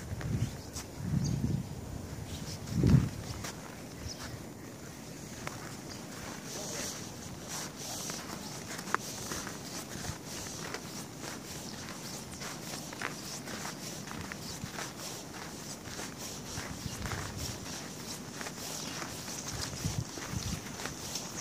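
Footsteps of a person walking on packed snow at a steady pace. There are a few low thumps in the first three seconds, the loudest about three seconds in.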